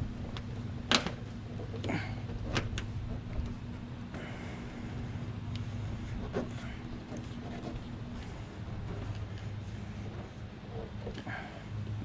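New outer belt weatherstrip being pressed down along the top edge of a Mazda RX-8 door, snapping onto the door flange in a few sharp clicks, the loudest three in the first three seconds. A steady low hum runs underneath.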